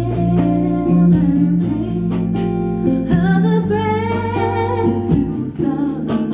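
Live band music: a woman singing with acoustic guitar over sustained low bass notes, her melody rising in the middle of the passage.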